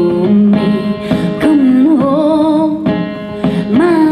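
Live folk band playing: a woman singing long, wavering held notes over plucked banjo and guitar with bass and drums.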